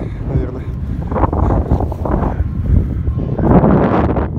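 Wind buffeting the microphone: a loud low rumble that gusts up and down.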